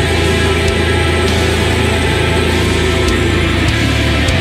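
Doom metal music playing: a dense, sustained wall of sound over a steady low drone.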